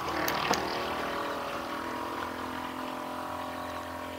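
A steady machine hum, a motor running evenly at one pitch, with two light clicks about half a second in.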